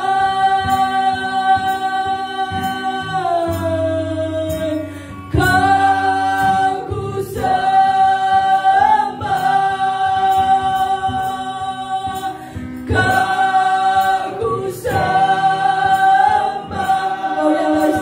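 A woman singing a slow Indonesian worship song into a microphone, holding long notes, with acoustic guitar accompaniment.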